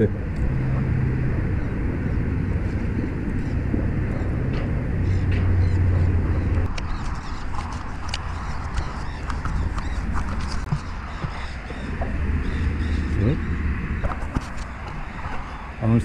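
Steady rush of wind and road noise from a bicycle being ridden, with the low hum of car traffic on the road alongside rising and falling.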